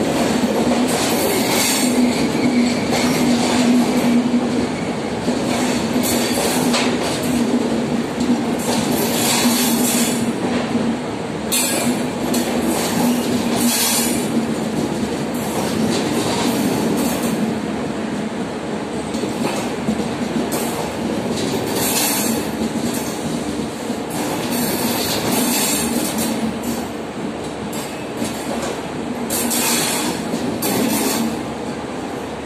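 Passenger train coaches rolling slowly past as the train pulls out of the station. The wheels run over the rails with a steady low hum and repeated sharp clacks at irregular intervals.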